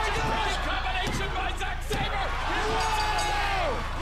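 Indistinct voices, one drawn-out and falling away near the end, over a steady low hum.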